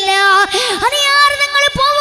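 A young boy singing a melodic verse into a microphone, holding long notes that bend and waver between them.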